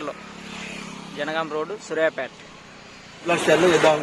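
People talking, with a short stretch of speech and then louder talk from about three seconds in, over a steady low hum.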